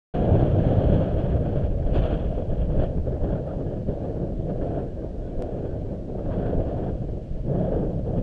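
Wind buffeting a handheld camera's microphone: a low, gusty rumble, strongest in the first couple of seconds.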